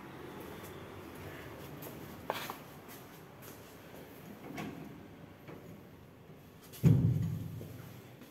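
A door bangs shut near the end with a heavy low thud that rings on briefly in the bare room. A lighter click, like a latch or handle, comes about two seconds in.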